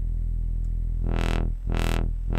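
SynthMaster software synthesizer holding a low sawtooth note through its filter. It starts dark, then about a second in the filter cutoff begins sweeping open and shut in a regular wobble, a little under two sweeps a second.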